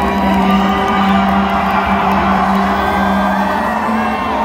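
A concert crowd cheering and whooping over a steady, held low note of intro music from the PA.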